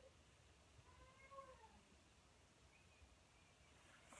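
Near silence, with a few faint, pitched animal-like calls that rise and fall in pitch, about a second in and again, fainter and higher, near three seconds.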